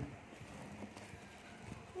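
Faint handling noise of a small cardboard box and its bubble-wrap packing: light rustling with a few soft, irregular knocks.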